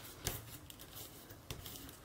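Faint rustle of a bone folder rubbed over folded origami paper to spread glue, with two light clicks, one just after the start and one about a second and a half in.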